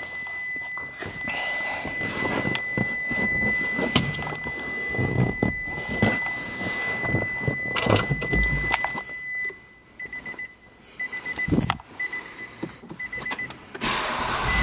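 A car's electronic warning chime in the 2011 Nissan Murano CrossCabriolet: a steady high beep for about nine and a half seconds, then short repeated beeps. Scattered clicks and knocks, with a deep thump about eight and a half seconds in.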